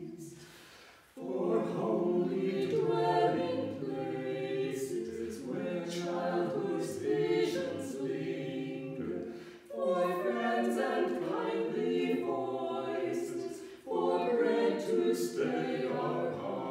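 A small four-voice choir singing a hymn a cappella in harmony, with no accompaniment. A held chord fades away, and after a short breath about a second in the voices come back in. They sing on in phrases, with brief breaks near the ten-second mark and again near fourteen seconds.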